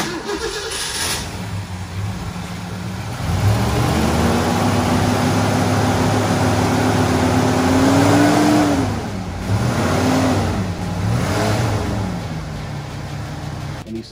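1970 Ford Mustang Mach 1's 428 Cobra Jet big-block V8 running: idling, revved up about three seconds in and held for several seconds, then blipped twice more before settling back to idle near the end.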